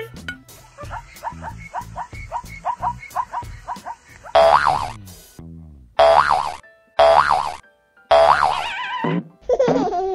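Cartoon-style sound effects over children's background music: a quick run of short pitched notes, then four springy, boing-like effects about a second apart, each rising and falling in pitch.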